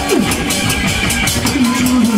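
Korean pumba (gakseori) performance music: quick, loud drum beats over held pitched instrument notes, with a short falling pitch glide near the start.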